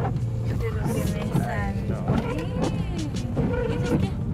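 Low, steady hum of a car heard from inside the cabin, with a voice running over it and a few sharp clicks.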